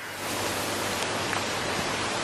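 A steady, even hiss that sets in at once as the speech stops and holds at a constant level, with no rhythm or tone in it.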